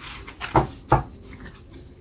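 Playing cards being swept up off a cloth-covered table and gathered into a deck, with two soft knocks about half a second and one second in as the deck is squared against the table.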